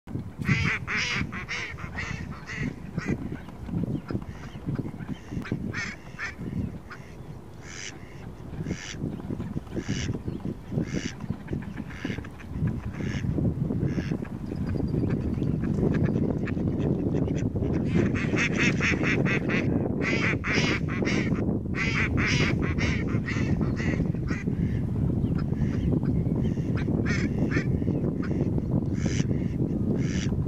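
A flock of mallards quacking, with calls in quick series, thickest near the start and again about two-thirds of the way through. From about halfway a steady low rumble rises underneath and stays.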